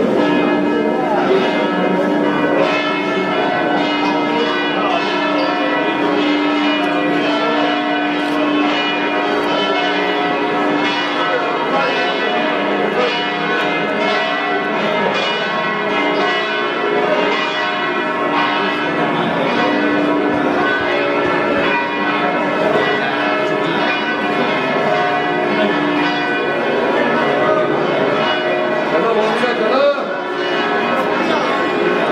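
Church bells pealing continuously, many overlapping ringing tones struck again and again.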